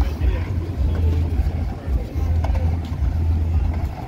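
Wind buffeting the microphone in uneven low rumbling gusts, with faint voices of passers-by behind it.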